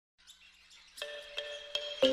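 Soundtrack music fading in: faint at first, then distinct notes enter about a second in, striking roughly every third of a second with high chirpy tones above.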